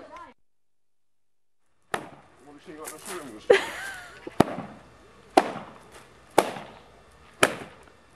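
Rattan carpet beater whacking a rug hung over a line. The strikes start about two seconds in and come about once a second, six sharp whacks in all.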